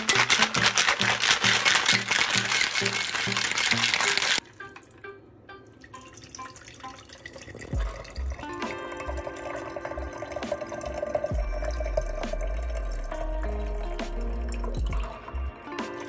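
Stainless steel cocktail shaker being shaken hard, its contents rattling in fast strokes for about four seconds before stopping abruptly; then the drink is poured from the shaker into a glass jar. Background music plays throughout and is clearer in the second half.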